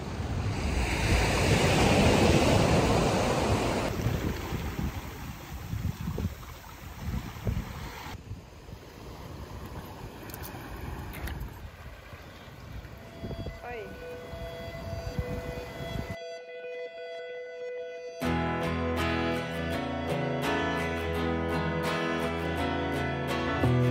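Wind buffeting the microphone over sea waves washing onto a stony beach, loudest in the first few seconds and then quieter. After a brief near-silent gap, a music track with guitar comes in near the end.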